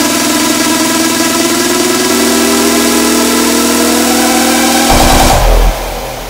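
Raw hardstyle build-up: a distorted synth tone rising steadily in pitch over a dense wash of sound, ending about five seconds in with a heavy bass hit, after which the track cuts away suddenly.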